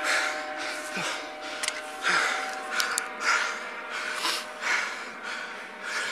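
A man breathing hard and audibly into a body-worn camera microphone, about one heavy breath a second, out of breath after a foot chase. A faint steady hum lies underneath.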